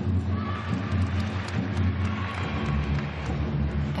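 A low, steady droning rumble of arena background noise, shifting in pitch about two and a half seconds in.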